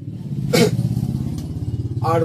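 A motor vehicle engine running close by: a steady low hum with rapid, even pulsing. A short sharp noise comes about half a second in.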